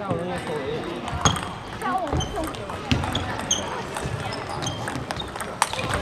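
Table tennis rally: the ball clicks sharply off the paddles and the table, one hit every second or so.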